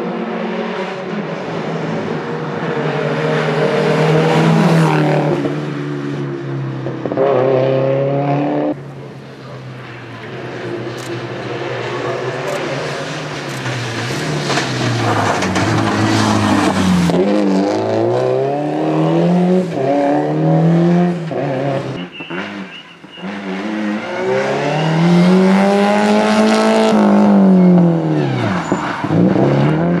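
Subaru Impreza WRX STI rally car's turbocharged flat-four engine driven hard on a tarmac stage, its note climbing and falling over and over as it revs through the gears and passes by.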